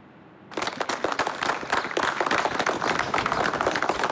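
A group of people applauding, the clapping starting suddenly about half a second in and keeping on steadily.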